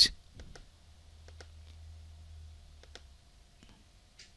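Computer mouse buttons clicking several times at irregular intervals, faint, over a low hum.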